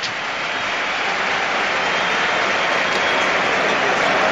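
Football stadium crowd noise, a steady wash of many voices that grows slightly louder.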